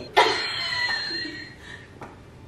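Laughter starting just after the opening and trailing off over about a second and a half, with a faint steady high-pitched tone under its first part.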